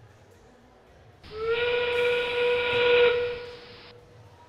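A whistle-like field sound cue from the arena's loudspeakers: one loud held note with overtones. It slides up slightly at the start, lasts about two and a half seconds, then cuts off abruptly.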